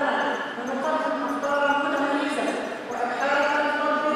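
A woman speaking Arabic into a podium microphone.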